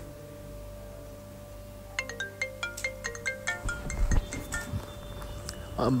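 Mobile phone ringtone: a quick melody of short bell-like notes starting about two seconds in and cut off after about three seconds, the brief ring of a missed call.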